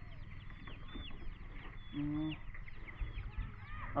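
Birds chirping: a quick, scattered series of short high peeps, each falling in pitch, over a low steady rumble, with a brief low hum about halfway through.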